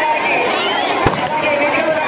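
Fireworks going off, with one sharp bang about a second in, over a crowd's voices.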